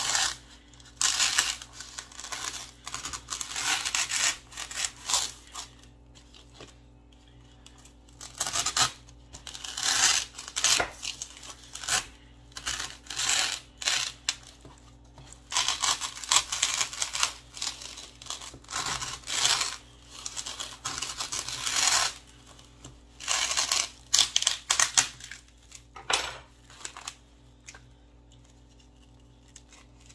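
Butter knife sawing through a block of styrofoam: runs of scraping, tearing strokes with short pauses between them, fading out over the last few seconds.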